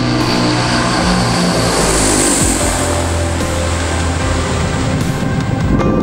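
Antonov An-22's four turboprop engines with contra-rotating propellers passing on take-off. A loud rush whose tones fall in pitch as it goes by, about two seconds in, then a steady low drone as it climbs away, heard over background music.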